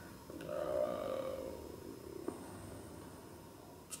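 A man's drawn-out, low, wordless vocal sound, like a hesitation hum, fading away over about two seconds, followed by a single soft click.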